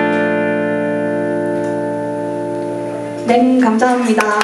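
A live band's final chord on electric guitars rings out and slowly fades. About three seconds in, audience cheering breaks in.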